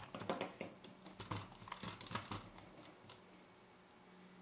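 Faint handling noise: a quick run of small clicks and light scrapes as a partly disassembled camera lens barrel is turned in the hand and metal tweezers are set down on the table. The noises bunch up in the first two and a half seconds and then stop.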